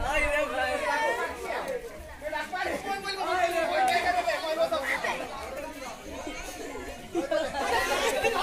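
Chatter: several people's voices talking and calling over one another, with no single clear speaker.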